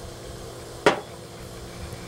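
A single sharp plastic click a little under a second in, as a pool test kit's plastic comparator and dropper bottle are handled on a tabletop between drops of a calcium hardness titration, over a faint steady hum.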